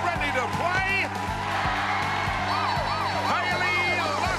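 Upbeat game-show theme music playing under a studio audience cheering, clapping and whooping, with many rising-and-falling shouts throughout.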